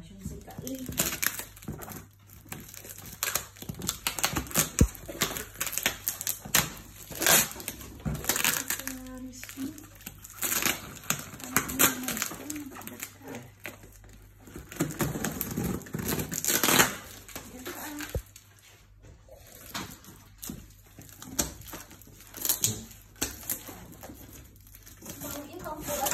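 Packing tape being cut with scissors and torn off a taped cardboard box: irregular quick rips, crackles and crinkles, with voices between them.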